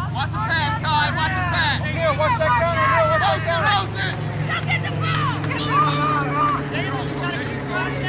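Many voices shouting and calling at once from a youth football sideline crowd, overlapping throughout, over a steady low hum.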